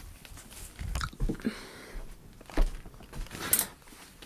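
Irregular rustling, scraping and light knocks of a cardboard box and its contents being handled close to the microphone, the loudest a sharp scrape about three and a half seconds in.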